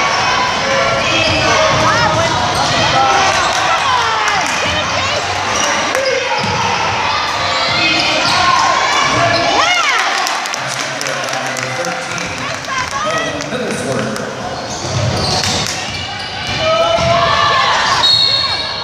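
Basketball bouncing on a hardwood gym floor during play, with players' and spectators' voices echoing in the gym.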